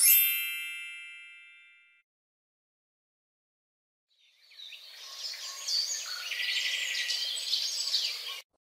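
A bell-transition sound effect: one bell strike, ringing with high tones and fading away over about two seconds. After a silent gap, birds chirp and twitter for about four seconds, with a quick trill partway through.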